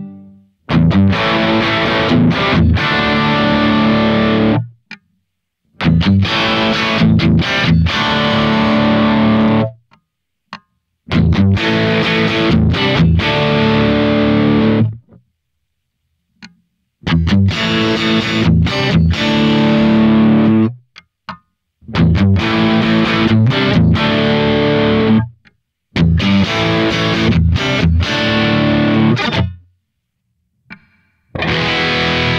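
Eko Aqua Lite electric guitar with Wilkinson pickups, played through distortion: six short riffs of about four seconds each, each stopped dead, with a second or so of silence between them.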